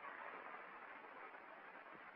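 Near silence: the steady, even hiss of an old film soundtrack.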